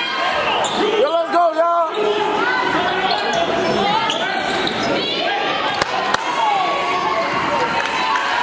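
Basketball bouncing on a hardwood gym floor, with indistinct voices of players and spectators echoing in the hall. There are two sharp knocks about six seconds in.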